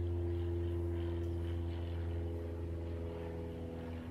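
A steady engine drone: a low hum with several held tones above it, shifting slightly near the end.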